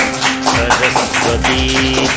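A small group clapping their hands in steady rhythm, about three claps a second, along with devotional music carried by a held melodic note.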